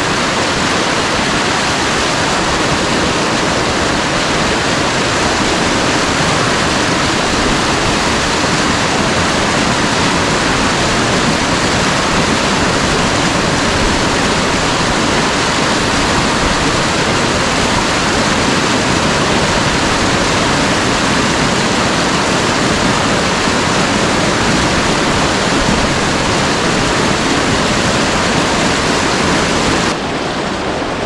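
A small waterfall in a rocky creek, water pouring steeply down between large boulders: a loud, steady rush of water.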